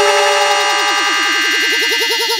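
Electronic dance track at a break: the bass drops out, leaving held high synth tones over a short rising synth note that repeats about seven times a second.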